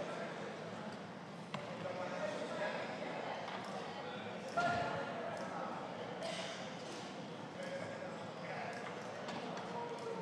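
Indistinct chatter of many voices in a large hall, with no single speaker standing out. A sharp click comes about a second and a half in, and a louder knock about halfway through.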